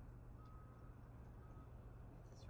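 Near silence: faint, evenly spaced beeps at one steady pitch, about one a second, over a low steady hum.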